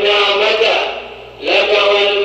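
A man's voice chanting in drawn-out melodic phrases: one phrase, a short break about a second in, then the next phrase begins.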